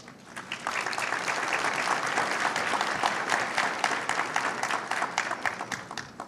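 A large audience applauding, many hands clapping at once. The applause builds within the first second, holds steady, and dies away near the end.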